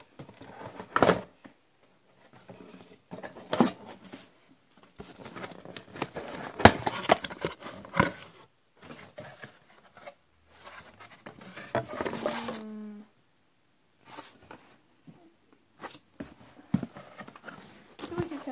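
A cardboard subscription box being handled and turned inside out: irregular rustling, creasing and tearing of cardboard with scattered clicks and scrapes, stopping and starting in short bursts.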